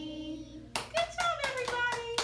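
A held sung note trails off, then from just under a second in a small group of preschool children and their teacher clap, with irregular, uneven claps. A high voice holds a long, slowly falling note over the clapping.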